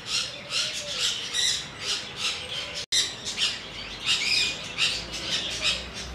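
A chorus of many aviary birds squawking and chattering without pause, with a brief break in the sound about halfway through.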